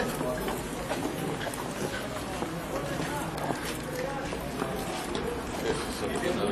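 Indistinct talking of several people close by, with scattered footsteps on a paved street.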